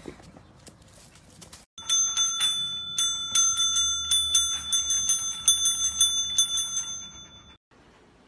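A desk service bell rung over and over by a dog's paw: quick, irregular dings, a few a second, for about six seconds. It starts about two seconds in and stops abruptly near the end.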